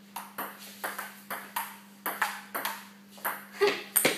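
A table tennis rally: the ball clicks sharply off the table and the paddles, about a dozen quick hits a few tenths of a second apart.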